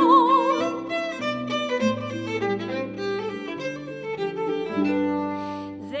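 Violin and pedal harp playing an instrumental interlude between verses of a lively Irish song: the violin takes the melody with vibrato over plucked harp chords and bass notes.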